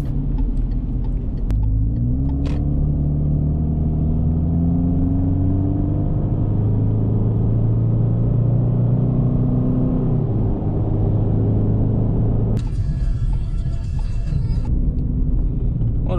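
Subaru Outback's 2.5-litre flat-four engine droning, heard from inside the cabin as the car drives and accelerates. The drone rises slowly in pitch for several seconds and then drops about ten seconds in. A hiss joins it for about two seconds near the end.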